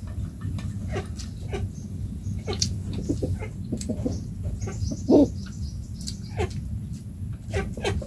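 Chopsticks and spoons clicking against small bowls during a meal, over a low steady rumble. Scattered short animal calls sound through it, with one louder call about five seconds in.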